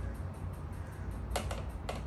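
A few light clicks, three in the second half, as a screwdriver works screws on the plastic top cover of a Roborock S5 robot vacuum, over a low steady hum.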